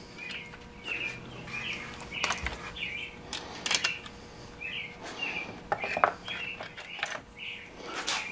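Light clicks and knocks of plastic and metal as a chainsaw's handle and mounting bolt are fitted by hand. A bird chirps repeatedly in the background, short chirps about every half second to a second.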